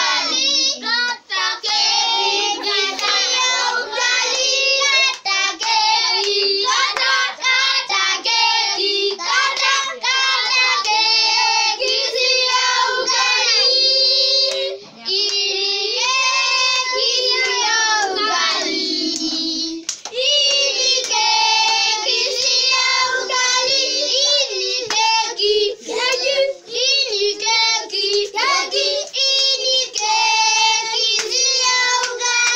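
Children singing a birthday song, accompanied by hand claps throughout.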